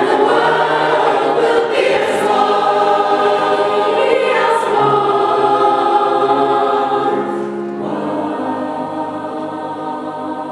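Mixed choir of men and women singing together, full and loud for the first seven seconds or so, then softer.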